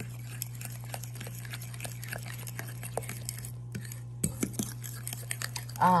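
Metal fork stirring batter in a glass bowl, tapping and scraping against the sides and bottom in a run of small, irregular clicks as egg, mashed banana and protein powder are mixed together.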